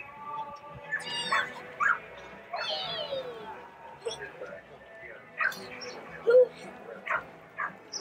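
Young children's voices: short high calls and squeals, several of them sliding in pitch, scattered over faint steady background tones.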